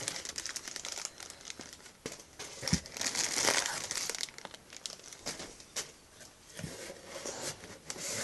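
Clear plastic packaging crinkling and cardboard box flaps rustling as a package is unpacked by hand, in irregular crackly bursts, with one louder knock a little under three seconds in.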